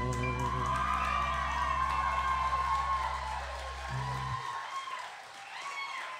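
A live band's final chord ringing out and stopping about four seconds in, as the audience applauds, cheers and whoops.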